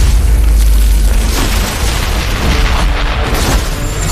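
Animated battle sound effects: a deep, continuous booming rumble with several whooshing surges of magical energy, under a music score.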